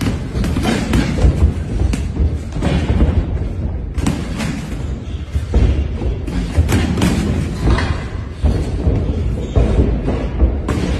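Boxing gloves thudding as punches land during sparring, in irregular flurries, over music with a heavy bass.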